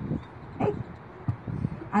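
A woman's amplified voice through a failing handheld microphone, cutting in and out so that only a few short broken fragments of speech come through over low background noise. The microphone is going out.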